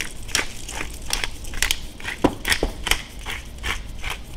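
A hand-twisted pepper grinder crushing black peppercorns: a run of irregular, crunching clicks, roughly three a second.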